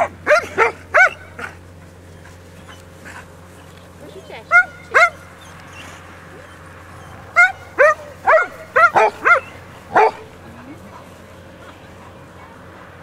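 A dog barking in short, high-pitched yips in three bouts: about four quick barks at the start, two more at around four and a half seconds, and a run of about seven between seven and ten seconds.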